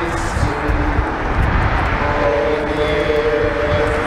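Hymn singing with long held notes, fuller from about halfway through, over a steady low rumble.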